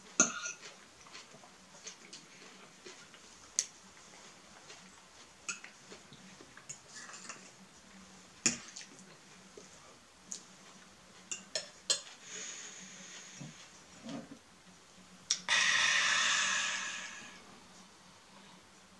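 Eating at a table: a metal fork now and then clicks against a ceramic plate and bowl, with soft chewing noises in between. Near the end comes the loudest sound, a hissing rush lasting about two seconds that fades out.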